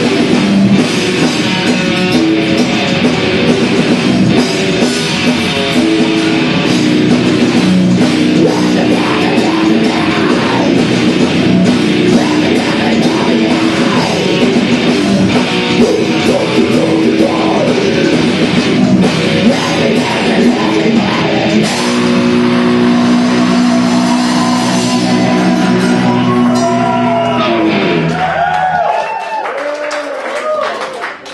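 Death metal band playing live: distorted electric guitars, a five-string bass guitar and a drum kit in a loud, dense wall of sound. About a second before the end the song stops, leaving a few wavering guitar tones ringing out.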